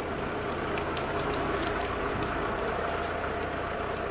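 Steady rain falling, with a patter of separate drops over an even rush.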